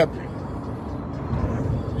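Steady road and engine noise of a car in motion, heard from inside the cabin.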